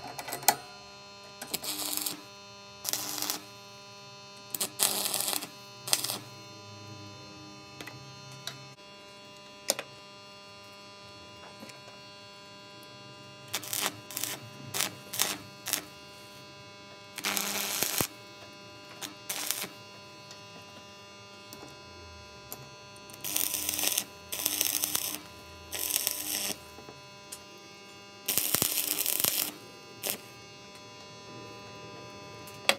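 Arc welder crackling in about a dozen short bursts of half a second to a second each, tack-welding steel parts, over a faint steady electrical hum.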